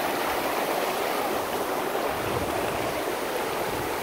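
Fast mountain river rushing over rocks in whitewater rapids: a steady, even rush of water.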